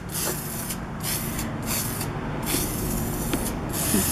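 Rust-Oleum oil-rubbed bronze metallic aerosol spray paint hissing from the can in several bursts with brief pauses, as paint is sprayed onto metal cabinet hinges and drawer pulls.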